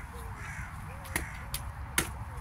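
Crows cawing over and over in short calls, several a second. Two sharp clicks cut in about halfway through and at the very end.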